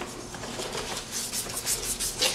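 Sandpaper rubbing back and forth by hand on a primed trim panel, a scratchy stroking sound as the primer is sanded down.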